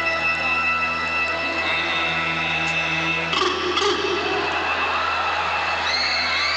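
Live stage band playing sustained keyboard chords that shift twice, with a couple of percussion hits about three and a half seconds in, over a steady low electrical hum.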